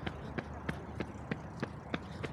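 Running footsteps on pavement, an even beat of about three footfalls a second, over a steady low background rumble.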